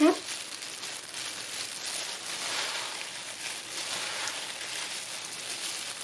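Glass noodles with vegetables and sesame being tossed by hand in a bowl with their dressing: a steady, soft, wet rustling and squishing.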